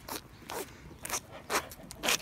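A three-month-old Charolais heifer calf sucking on a person's fingers, four wet sucking pulls about half a second apart. It is the suckling reflex, with no milk to be had.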